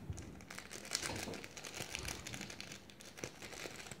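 Small plastic sachet crinkling as it is squeezed and shaken to pour out dry Orbeez water-bead granules, with many faint, irregular ticks.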